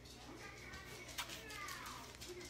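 A toddler's short, high whine that slides down in pitch, starting about a second in just after a sharp tap.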